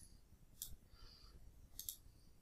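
Faint computer mouse clicks over near silence: a single click about half a second in and a quick pair near the end.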